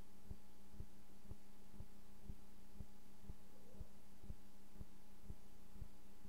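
A steady low hum with soft, evenly spaced low thuds about twice a second.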